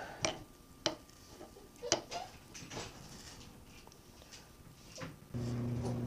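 A few light, scattered metal clicks and taps from the small vial tube and end cap of a machinist level being handled and fitted over a granite slab. Near the end a steady low hum takes over.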